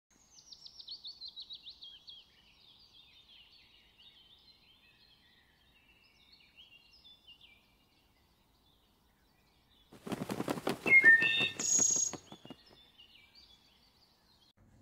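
Songbird singing: a quick run of whistled notes, each sliding down in pitch and the run falling as it goes, then softer, scattered chirps. About ten seconds in comes the loudest sound, a rapid rattling burst of about two seconds with a few short high tones over it, after which faint chirping returns.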